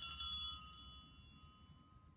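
A single bright metallic clink that rings on: its high overtones fade over about a second and a half, while one lower tone lingers longer.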